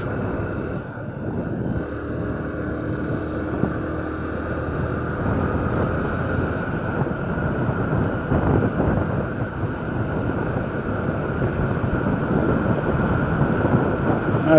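Honda CG 150 Fan motorcycle's single-cylinder four-stroke engine running steadily at cruising speed, mixed with wind rush on the microphone.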